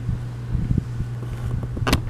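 Handling noise from a handheld camera's built-in microphone: irregular low bumps and rubbing over a steady low hum, with one short sharp rustle near the end.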